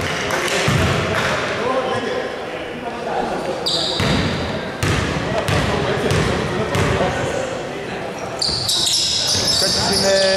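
Basketball bounced on a hardwood court as a player readies a free throw, with indistinct voices echoing in a large hall. Short high squeaks come near the end.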